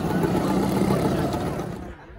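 Classic two-stroke scooter engine passing close by, loud at first and fading as it moves away.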